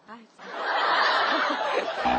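Laughter breaking out about half a second in and going on loudly, over a flubbed line during a take.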